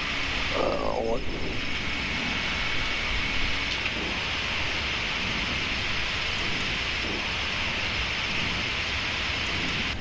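Steady rushing airflow noise in a Boeing 777 cockpit as the landing gear is lowered on approach.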